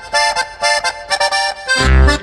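Accordion playing a fast, choppy polka melody on its own, with no bass under it. Just before the end, a heavy hardstyle kick-drum beat comes in under it.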